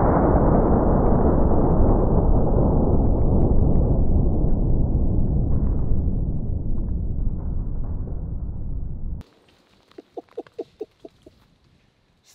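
Slowed-down slow-motion sound of a 600 Nitro Express double rifle shot hitting a bowling ball: a deep, drawn-out boom that fades slowly for about nine seconds, then cuts off suddenly. A short burst of laughter follows near the end.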